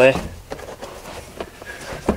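Faint handling noise from a hand pressing and smoothing a rubber cargo mat, with a few soft, short taps.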